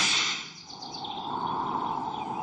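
Cartoon sound effects: a quick rising whoosh as the background music cuts off, then a fading, shimmering hiss that settles into a steady airy noise.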